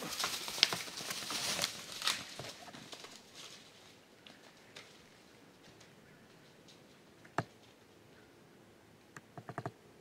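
An arrow-hit doe bolting away through dry grass and brush: a run of rustling, crunching footfalls, loudest in the first two seconds and fading out by about four seconds in. Later a single sharp snap, then a quick cluster of clicks near the end.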